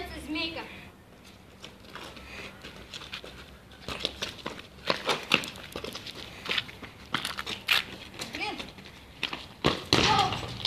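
Shoes scuffing and crunching on loose gravel, with scattered sharp knocks of a football being kicked, mostly in the second half.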